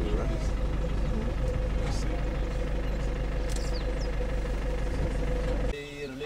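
Safari vehicle's engine running while driving: a steady hum over a heavy low rumble. It cuts off suddenly near the end.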